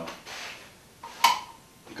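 A single sharp click about a second in, with faint soft sounds before it.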